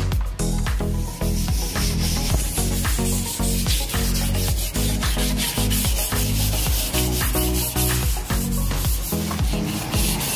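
Sandpaper rubbed by hand over an Audi A6 Allroad's black plastic bumper cladding in quick back-and-forth scrubbing strokes, scuffing the weathered surface before painting. Background music with a steady beat plays along.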